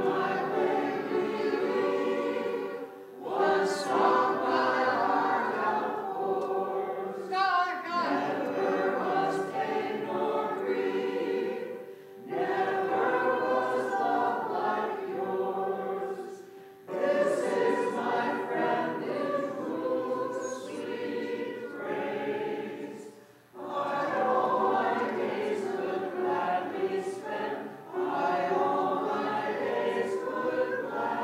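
Congregation singing a hymn together, in sung phrases of about four to five seconds with short breaks for breath between them.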